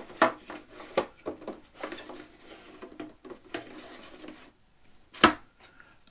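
Plastic canister filter parts being handled: the foam pad's plastic holder slid down into the filter body, scraping and rubbing, with a few light clicks and one sharp knock about five seconds in.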